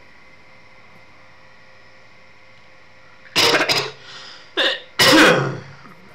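A man coughing: three harsh coughs in quick succession starting about three seconds in, the last the loudest.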